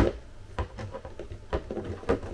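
Small plastic clicks and knocks from a radio-control transmitter and its six-AA battery holder being handled and fitted together, the holder's wires getting in the way. There is a sharp click at the very start, then a few lighter ones.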